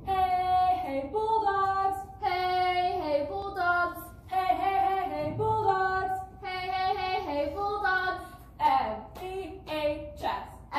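A girl's voice singing a cheer chant alone and unaccompanied, in held notes that step up and down in short phrases.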